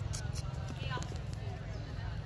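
Faint voices of people talking, over a steady low rumble, with a few short clicks about a quarter-second in.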